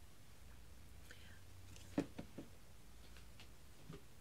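Quiet room tone with a steady low hum, broken by one short spoken word about two seconds in.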